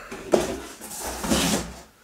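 Cardboard box being pulled off and set aside: a knock about a third of a second in, then about a second of cardboard scraping and rustling.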